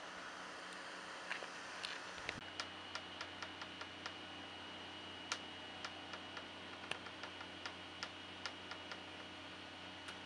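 Faint, irregular sharp ticks, about two or three a second, over a steady hiss. A thin, steady high whine comes in a couple of seconds in.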